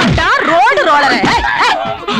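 Yelping, whimpering cries that swoop sharply up and down in pitch, dog-like in sound.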